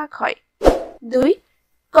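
Narration voice speaking, breaking off into a short pause near the end.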